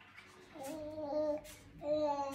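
A baby's voice making two drawn-out, steady 'aah' sounds. The first lasts about a second, and the second starts near the end.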